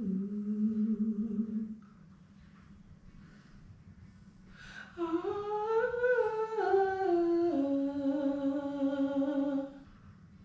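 A singer's voice singing a wordless background-vocal line: a held note that stops about two seconds in, then after a pause a phrase that rises, steps back down and settles on a long held note.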